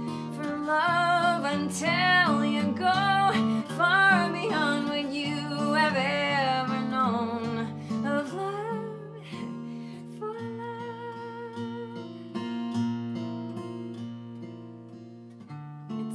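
A woman singing with vibrato over an acoustic guitar; about nine seconds in the voice stops and the guitar plays on alone, softer.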